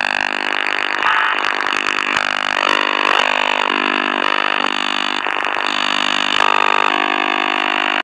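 Over-the-horizon radar signal heard through a Tecsun PL-450 shortwave receiver's speaker while it is tuned around 10.9 MHz: a loud, harsh buzz of many steady tones whose pitch and texture change abruptly every second or so as the dial moves.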